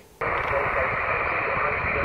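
Steady hiss of radio static, starting a moment in and holding even.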